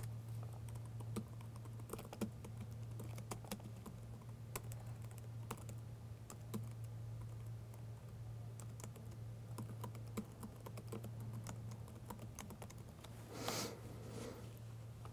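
Typing on a computer keyboard: irregular, quiet key clicks over a steady low electrical hum. Near the end there is a short, louder rush of noise.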